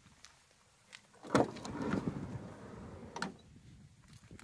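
Sliding side door of a Volkswagen Caddy van being opened by hand. A sharp clunk comes as the handle releases, about a second and a half in, then the door rolls back along its runner and gives a second knock near the end as it stops open.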